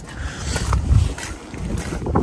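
Wind buffeting the microphone: a low, uneven rumble that swells about a second in.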